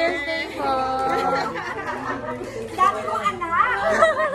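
Several people chattering, their voices rising in pitch near the end.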